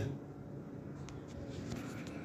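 Faint handling noise: light rubbing and scraping, with a few soft clicks in the second half.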